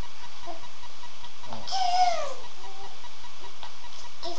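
A toddler's short high-pitched squeal that glides down in pitch about two seconds in, with softer little babbling sounds around it, over a steady low buzzing hum.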